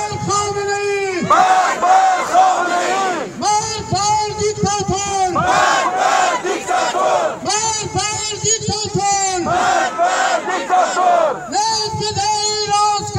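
A crowd of demonstrators chanting a slogan in unison, led through a megaphone, in loud shouted phrases that repeat about every two seconds.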